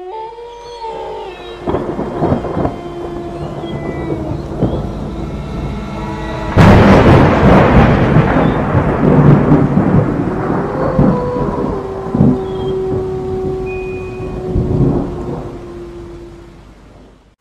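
Thunderstorm sound effect: rain with rumbles of thunder and a loud thunderclap about six and a half seconds in, over a few long held tones. It fades away near the end.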